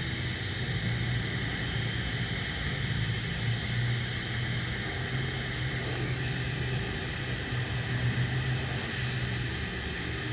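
TIG welding arc burning steadily on 2-inch schedule 10 stainless steel pipe at about 55 amps, giving an even hiss and buzz with a constant low hum. The filler rod is being dipped into the keyhole of the open root.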